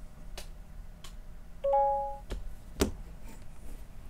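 A short two-note electronic beep, the loudest sound, about a second and a half in, with four computer mouse clicks scattered around it, the last and loudest near three seconds in.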